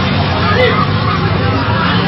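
Street hubbub of several people's voices over a steady low rumble of traffic, heard through a phone's video recording.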